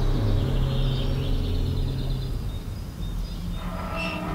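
An SUV driving by on a road: a steady low engine and tyre rumble that fades after about two seconds. Music with held notes comes in near the end.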